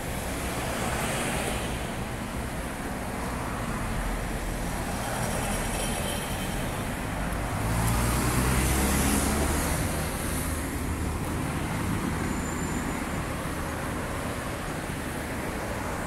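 City street traffic: a steady wash of road noise from passing cars. A heavier vehicle passes close around eight to ten seconds in, making it louder for a couple of seconds.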